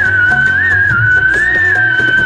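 A whistled melody over the song's backing music: one long, high note held throughout, wavering gently in the middle.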